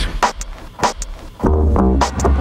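Hip hop backing beat at a live show: a few sparse drum hits, then a heavy bass line and beat come in about one and a half seconds in.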